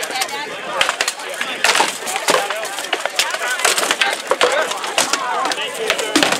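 Rattan weapons knocking against wooden shields and armour in a crowded melee: many sharp, irregular cracks and knocks, several close together, over a background of voices.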